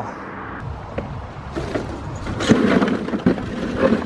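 Old bricks and rubble tipped out of a wheelbarrow, clattering and knocking onto a pile of bricks. The clatter starts about a second and a half in and is loudest toward the end.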